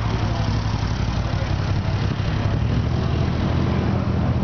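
An engine running steadily with a low, even hum.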